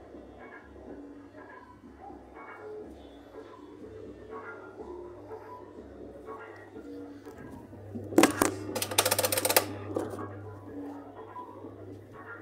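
Two Scoop coin-operated kiddie rides running without their ride music: a low motor hum with a loud burst of rattling clatter about eight seconds in, lasting about two seconds. Faint music is in the background.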